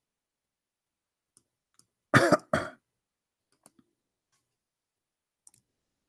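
A man coughs twice in quick succession about two seconds in. A few faint clicks come before and after the cough.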